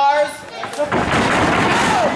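A heavy crash on a wrestling ring's canvas and boards about a second in, as a wrestler dives from the top rope onto his opponent. The loud, noisy impact carries on for about a second.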